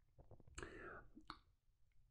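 Near silence: one faint breath about half a second in, followed by a small mouth click.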